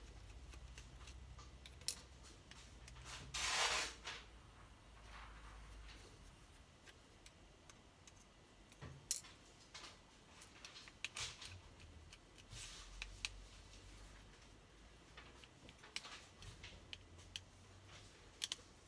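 Small precision screwdriver backing the screws out of a Samsung C3510 Genoa phone's plastic case: faint scattered clicks and scrapes of the tool on the screws and housing, with one louder scrape about three and a half seconds in.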